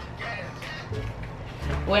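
Music with guitar, heard faintly in the lull between voices: loud music leaking from the over-ear headphones used in the whisper challenge.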